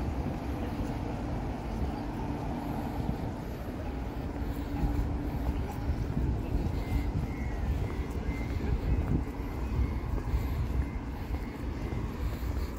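Outdoor city street ambience dominated by a steady low rumble, with a faint hum through the first half and a faint high whine in the second half.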